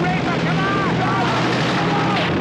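Propeller aircraft engines droning steadily, with short shouted voices over the drone.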